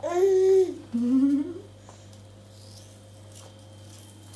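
A toddler humming twice while eating: a short level 'mmm', then a rising one about a second in.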